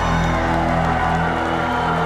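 Live rock band's electric guitar and bass holding a steady, ringing chord, with the crowd cheering.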